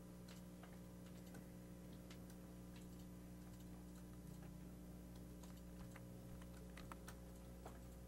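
Near silence: room tone with a steady low electrical hum and faint, scattered clicks like a computer keyboard or mouse.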